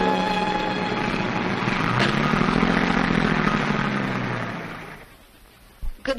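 Taxi engine pulling away, its low note swelling and then falling off before it fades out about five seconds in, with a click about two seconds in.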